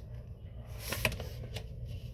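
Paper rustling as a paperback picture book is handled and its pages turned, with a few soft paper flicks about a second in.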